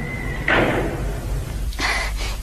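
Radio-drama sound effect of a door banging shut about half a second in, followed by a second shorter knock near the end. A thin, steady high tone sounds just before the bang and stops with it.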